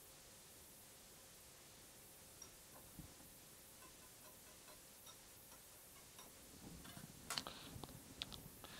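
Faint ticking of a small wire whisk against a glass bowl during a gentle stir, a few ticks a second, then a few sharper clicks near the end as the whisk is set down on the table.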